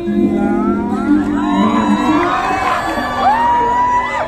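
Live pop song played by a band, with many voices singing along and a crowd cheering over it; a long held vocal note starts about three seconds in.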